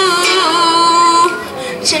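A child singing with a strummed acoustic string accompaniment, holding one long note through the middle.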